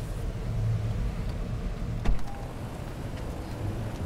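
Low steady rumble of a car running, heard from inside the cabin, with one sharp click about two seconds in.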